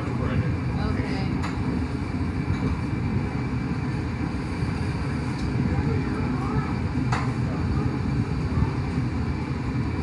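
Steady low roar of a glassblowing furnace's gas burners, heard from the open glory hole. A single sharp click comes about seven seconds in.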